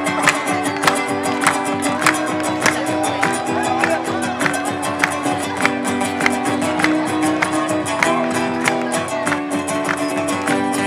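Live instrumental folk music: acoustic guitars strumming chords over a steady beat of just under two strikes a second.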